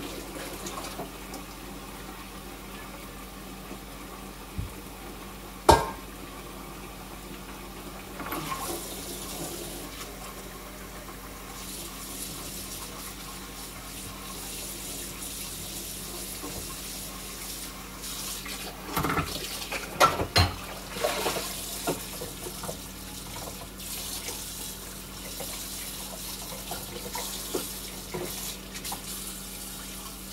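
Kitchen faucet running steadily into a sink while dishes are rinsed, with sharp clinks and knocks of glass and dishware: a single loud one about six seconds in and a cluster around twenty seconds in.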